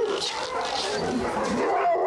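Several dogs barking and whining at once, a dense chorus of overlapping calls with no pause.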